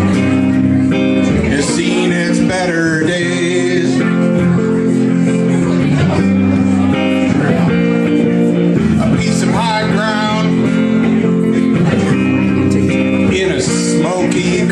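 Live song: a man singing over his own strummed electric guitar, a steady chordal accompaniment with vocal phrases coming and going.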